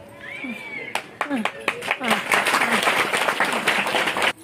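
Several people clapping by hand: separate claps about a second in that build into dense, loud clapping from about two seconds on, with voices underneath. A brief high rising-and-falling call comes near the start.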